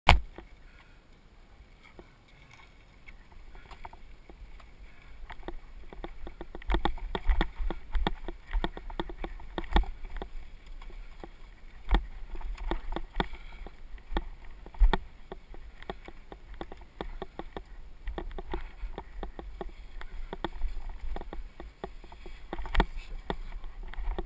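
Handlebar-mounted camera on a mountain bike riding a rocky dirt trail. The bike rattles, with frequent sharp knocks as the tyres hit rocks and ruts over a low rumble. It is quieter for the first few seconds and grows busier once the bike gets rolling.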